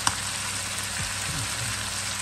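Potatoes, meat and onions frying in a pan, sizzling steadily, over a low steady hum, with one short click at the start.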